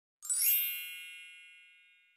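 A bright chime sound effect on a title card: many bell-like tones sound together about a quarter second in, then fade slowly away.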